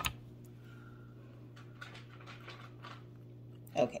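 Faint light ticks and scraping of a metal pipe tamper pressing tobacco down into a wooden churchwarden pipe bowl, over a steady low hum.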